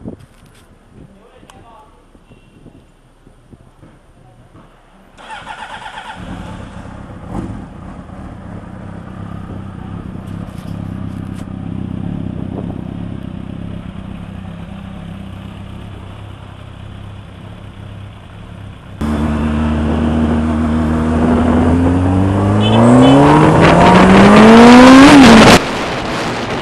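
Honda CBR600RR inline-four motorcycle engine through Arrow exhaust silencers, coming in about five seconds in and running steadily at idle. Later it gets much louder and then climbs steadily in pitch for a few seconds as it is revved, cutting off suddenly just before the end.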